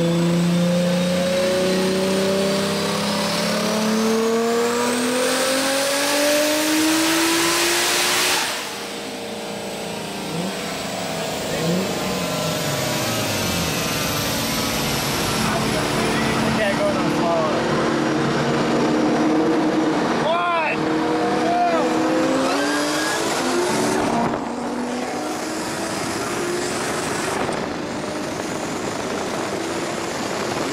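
1993 Toyota Supra's turbocharged straight-six, on E85 with a single 7675 turbo, revving up hard through a dyno pull with a rising turbo whistle, then letting off suddenly about eight seconds in. Afterwards the engine runs on at lower, uneven revs, with a sharp pop about twenty seconds in.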